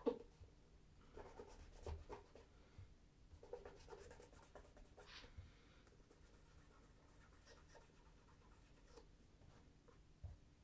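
Faint, intermittent rubbing and light scuffs as fingers work in a tin of shoe wax and handle a leather oxford shoe. The sounds die away after about six seconds, leaving near silence.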